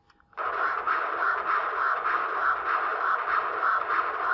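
Continuous wave Doppler audio from an ultrasound machine's speaker: the whooshing sound of blood flow in the heart, pulsing with each heartbeat. It starts about a third of a second in.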